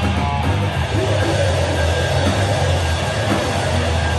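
Live rock band playing loudly and without a break: electric guitar and drum kit.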